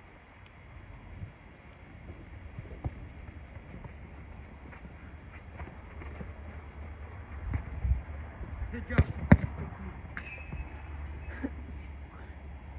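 Football being kicked on an artificial-turf pitch: scattered thuds of boot on ball, the loudest a pair of sharp kicks about nine seconds in, over low wind rumble on the microphone.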